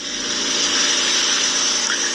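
Steady rushing hiss of background noise with no distinct events, holding level throughout.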